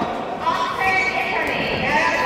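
Voices calling out during a kickboxing bout, several people at once, with no clear punch or kick impact standing out.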